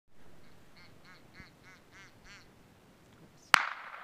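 A duck call sounding a fast series of about seven quacks, followed about three and a half seconds in by a single loud gunshot that rings out and dies away, the loudest sound here.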